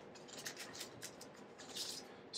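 Faint rustling and light ticks of hands handling an old paperback and a clear plastic book bag, with a brief louder crinkle near the end.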